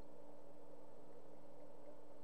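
Room tone: a steady faint hum and hiss picked up by a webcam microphone, with no distinct sounds.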